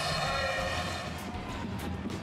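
Arena crowd noise after a basket, a steady murmur that slowly dies down.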